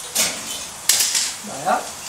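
A metal sugar thermometer clinks and scrapes against a copper pot as it is lifted out, in two sharp bursts, the second about a second in. Under it, caramelising sugar boils with a steady bubbling hiss.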